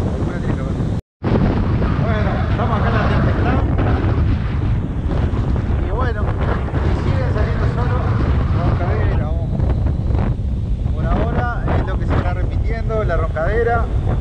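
Strong wind buffeting the microphone on an open beach, a heavy steady rumble, with voices partly heard through it. The sound drops out for an instant about a second in.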